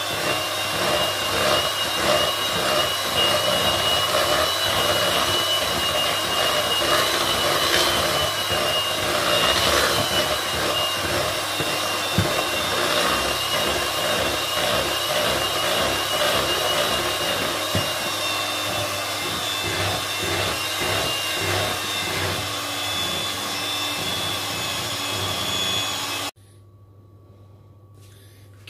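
Electric hand mixer running steadily, its beaters whisking cake batter in a bowl, with an even motor whine. It switches off suddenly near the end.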